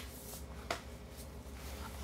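Faint handling of an iPad in a keyboard case as it is lifted and turned over, with one light click about two-thirds of a second in.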